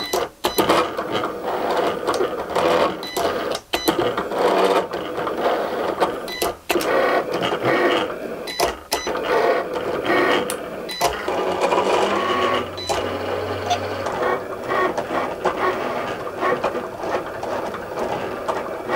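Cricut Explore Air 2 cutting machine engraving acrylic with its metal engraving tip: the carriage and roller motors whir, changing pitch as the head moves, with a few brief breaks.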